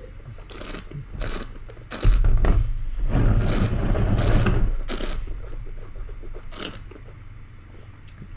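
A wine taster sipping red wine and drawing air through it in the mouth: noisy slurping and sucking, loudest in a run of about two seconds in the middle, with shorter slurps before and after.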